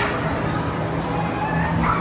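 Tornado simulator's fan blowing hard inside the enclosed booth: a steady rushing wind with a low, steady hum.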